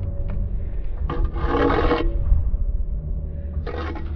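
A steel brick trowel scraping sand-and-cement mortar as it is loaded and worked into a brick joint: two short rasping scrapes, a longer one about a second in and a shorter one near the end, over a steady low rumble.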